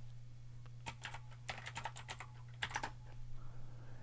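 Faint keystrokes on a computer keyboard, coming in a few short runs of typing.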